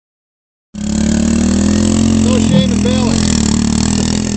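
Small pit bike engine running at a steady speed close by, cutting in suddenly just under a second in. A person's voice comes through briefly around the middle.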